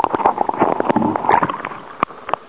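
Water splashing and gurgling up close, a dense rapid crackle of small splashes that is loudest for the first second and a half and eases near the end.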